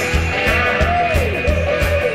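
Rock band playing an instrumental gap between vocal lines: a steady pulsing bass-and-drum beat, with a lead line that swoops up and back down in pitch in the middle.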